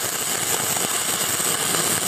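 Shielded metal arc (stick) welding arc crackling and hissing steadily as the rod burns along the joint.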